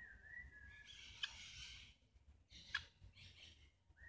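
Faint, thin, high bird call held for about a second and a half, then two sharp clicks about a second and a half apart, over quiet outdoor background hiss.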